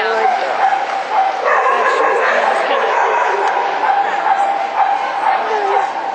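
A dog barking and yipping over the talk of people around the ring.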